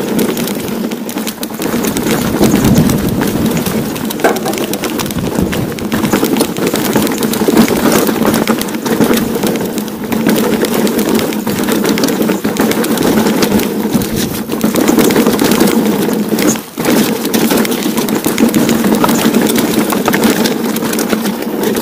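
Steel hardtail mountain bike rattling over a rocky trail on a descent, with tyres crunching and clattering on stone and a dense run of small knocks, briefly easing about three-quarters through.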